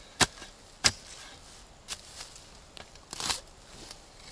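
Steel shovel blade chopping down into forest soil and roots: two sharp strikes in the first second, a couple of lighter ones, then a longer gritty burst near the end.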